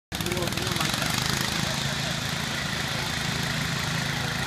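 1964 Allis-Chalmers B-10 garden tractor engine running steadily under load while pulling a weight-transfer sled.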